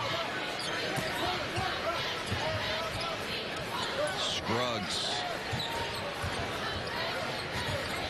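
A basketball being dribbled on a hardwood court, bounce after bounce, with short squeaks of sneakers on the floor, the clearest about halfway through.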